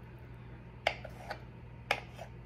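Kitchen knife blade clicking against a countertop as it slices through a hard-boiled egg: a sharp click about a second in, a fainter one just after, and another near the end.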